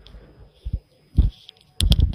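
A few dull low thumps at uneven intervals, the last ones coming close together near the end.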